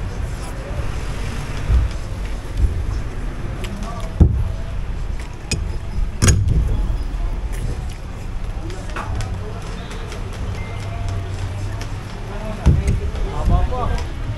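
Steady low rumble of open-air background noise with faint voices in the background and scattered short clicks, the sharpest about four and six seconds in.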